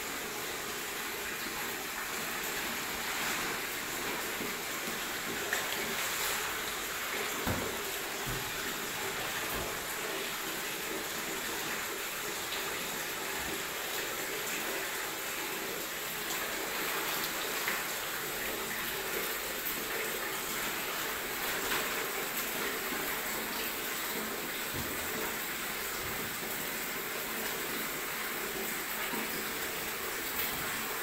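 Steady rushing hiss of a gas-fired soybean steamer running under the cloth-lined drums, with a few soft knocks about seven to ten seconds in.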